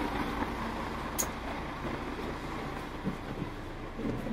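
City bus engine idling with a steady low hum while the bus stands at a stop. There is a short click about a second in.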